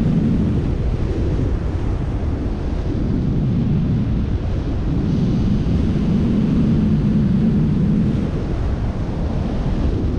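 Airflow buffeting the camera microphone of a paraglider in flight: loud, steady low wind noise.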